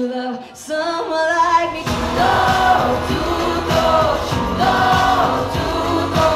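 A woman singing a pop ballad live over a backing track. About two seconds in, a drum beat and layered choir-like backing vocals come in under her held notes.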